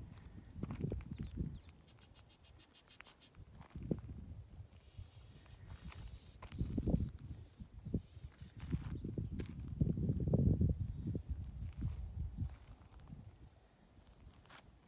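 Wind buffeting the microphone in irregular low gusts outdoors, with a few short high chirps in two clusters, around the middle and toward the end.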